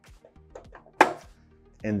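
A single sharp clack about a second in as a belt clamp on a Novitool Pun M NDX finger punch is locked down on the conveyor belt, over background music.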